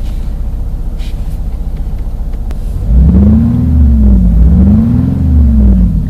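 Renault R-Sound Effect playing a simulated historic engine sound through the car's cabin speakers, over the car's low idle hum. About halfway in come two smooth revs, each rising and falling in pitch, with a deep rumble underneath.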